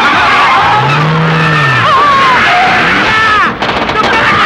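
Film sound effects of a car stunt: tyres screeching and car noise, with a low swooping tone rising and falling about a second in.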